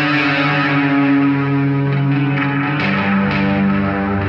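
Electric guitar played through a chain of effects pedals: held, ringing chords, with a change of chord about three seconds in.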